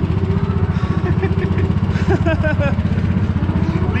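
Go-kart engine idling steadily as a low, fast-pulsing rumble while the kart sits stopped.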